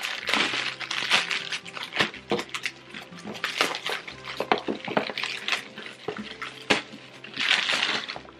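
Plastic poly mailer bag being torn open and handled, giving irregular crinkling and rustling throughout.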